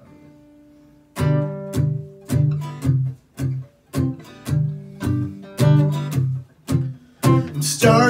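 Acoustic guitar played in short, separated strummed chords, about two a second, each cut off before the next. A single faint held note comes before them in the first second.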